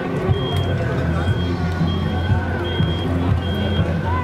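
Dutch ambulance siren sounding in repeating alternating tones, over the steady low drone of a heavy truck engine.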